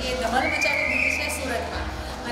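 A woman's voice holding one high sung note for about a second, rising slightly in pitch.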